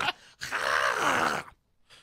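A man's drawn-out, strained groan, lasting about a second.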